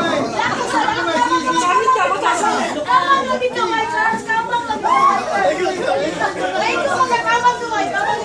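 A crowd of many voices talking and calling out over one another, loud and without a break.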